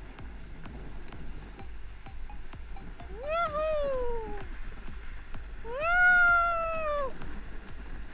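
A person's high, drawn-out whoops: two long calls, each rising and then falling in pitch, the second one the louder. Faint clicks run underneath.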